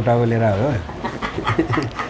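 A person laughing: one drawn-out, wavering voiced laugh in the first second, then fainter small sounds.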